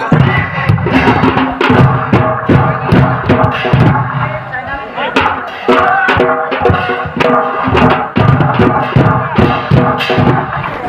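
Chhau dance music: folk drums beaten in a continuous rhythm with a sustained melody line over them.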